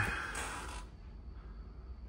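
Quiet steady low hum with a brief soft hiss about half a second in.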